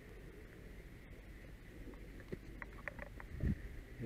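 Faint rustling and a few light knocks of firefighters' gear being handled over a steady low rumble, with a duller thump about three and a half seconds in.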